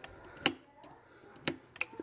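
A GFCI outlet's reset button clicking as it is pressed, a sharp click about half a second in and a quick run of three lighter clicks near the end. The outlet trips again at once and will not stay reset.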